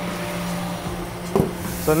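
Steady low hum of shop machinery, with one dull thump about one and a half seconds in as the lid of the grinder's oil-tank cabinet is shut.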